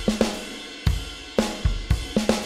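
Addictive Drums 2's sampled Black Velvet drum kit, Standard preset, playing a steady beat of kick, snare and cymbals, with a strike about every half second.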